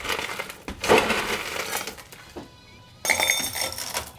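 A metal scoop digging into crushed ice in an ice bucket, then, about three seconds in, crushed ice poured into a metal julep cup with a short clattering, ringing rattle.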